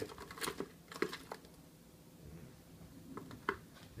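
Faint, scattered clicks and rustling close to a wire birdcage, with no parakeet calls.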